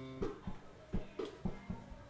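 A guitar picking a few sparse single notes, about six plucks, quietly.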